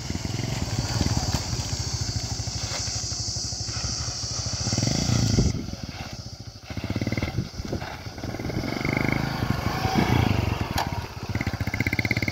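A Bajaj Kawasaki 4S Champion's single-cylinder four-stroke engine running at low speed under a learner's throttle, its note swelling and easing as the bike passes, turns and rides off. High-pitched insect chirring runs through the first half and cuts off suddenly.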